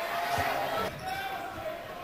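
Basketball bouncing on a hardwood court a couple of times over steady arena crowd noise.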